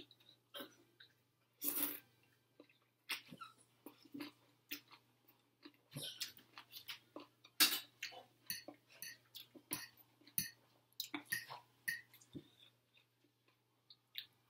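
Close eating sounds of a person chewing a mouthful of rice noodles and papaya salad: irregular wet smacks and clicks, with a couple of louder ones.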